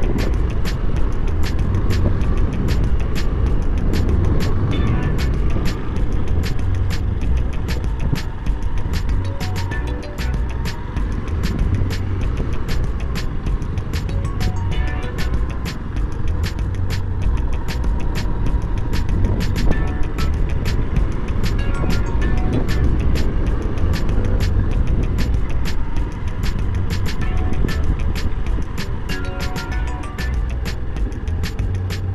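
Background music with a quick steady beat, over the low running sound of a Honda Bros 160's single-cylinder engine ridden slowly.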